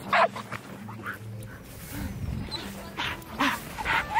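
Excited dog on a leash making short vocal sounds in bursts, over steady background music.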